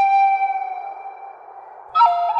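Flute music: one long held note that dips slightly in pitch and fades away, then a new note comes in sharply near the end.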